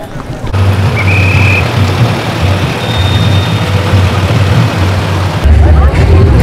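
A steady low rumble, then loud bass-heavy music cuts in about five and a half seconds in.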